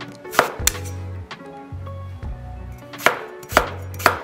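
A kitchen knife dicing raw potatoes on a wooden chopping board. There are two sharp knocks of the blade on the board a little under a second in, then two more about three seconds in.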